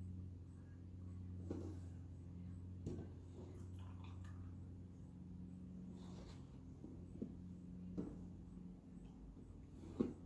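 Quiet handling sounds of milk being poured into a portable blender cup: a few soft knocks and clinks of the container over a steady low hum.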